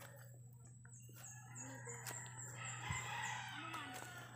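Faint bird calls: a quick run of about six short, high, falling chirps through the middle, then a longer, fainter call near the end.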